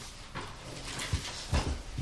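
Papers and a folder being handled on a wooden table: light rustling with a couple of soft knocks about a second in and again about a second and a half in.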